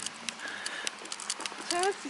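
Irregular sharp clicks and taps throughout, with a woman's voice rising briefly near the end.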